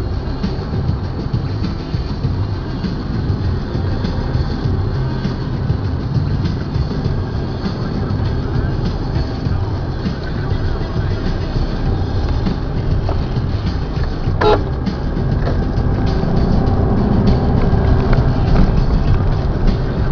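Engine and road rumble heard from inside a car driving through city traffic, steady and low, growing slightly louder in the last few seconds. A brief higher-pitched sound cuts in once, about two-thirds of the way through.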